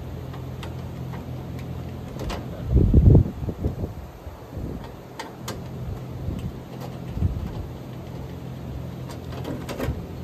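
Hands working on the opened outdoor unit of an air conditioner: scattered light clicks and knocks from handling parts and wiring, and a louder low rumble about three seconds in. A steady low hum runs underneath.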